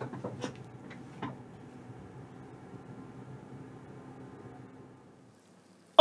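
A few soft knocks and rustles as someone sits down at a desk and settles into a chair, then faint steady room hum that drops to silence near the end.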